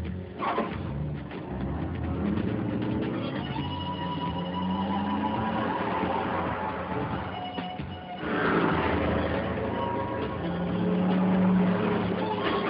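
Vehicle engines revving in a chase, the engine note climbing twice as they accelerate, with music underneath. A rush of noise comes about half a second in and again about eight seconds in, when the sound grows louder.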